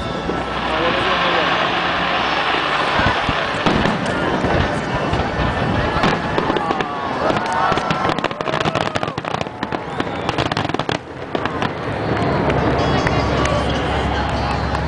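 Aerial fireworks shells bursting overhead, a few bangs at first and then a dense, rapid run of bangs through the middle, easing off near the end.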